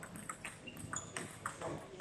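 Table tennis rally: the celluloid ball clicking sharply off the players' rackets and bouncing on the table, several light hits in quick succession.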